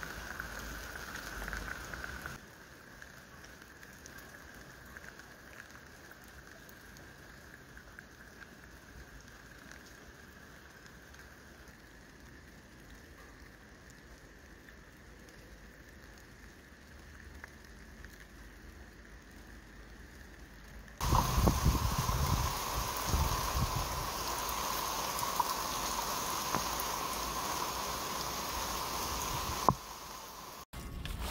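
Rain pouring down: soft and steady for most of the time, then suddenly much louder and heavier about two-thirds of the way in, with some low rumbling as it picks up.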